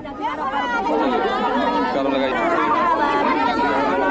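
Several women wailing and crying out together in mourning over a death, their high voices overlapping without a break.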